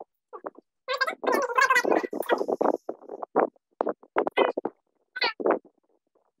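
A woman laughing in repeated bursts, loudest in the first half, with short breaks between fits.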